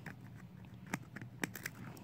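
Faint scattered clicks and light taps of glitter being shaken from a container onto a board freshly coated with Mod Podge, with a few sharper ticks about a second in.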